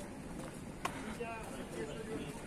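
Low, steady outdoor street background with one sharp click just under a second in, followed by a brief faint voice.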